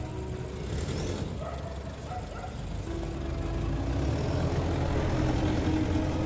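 SUV engine running as the vehicle moves slowly, with a low rumble and street noise.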